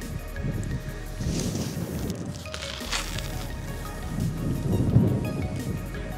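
Low rumbling noise that swells twice, loudest about five seconds in, under soft background music.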